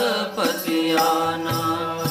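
Sikh devotional keertan: a man chanting a shabad over sustained harmonium (vaja) notes, with tabla accompaniment.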